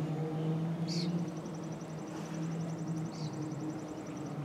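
Steady low hum of a car, heard from inside the cabin. A faint, high, rapidly pulsing trill joins about a second in.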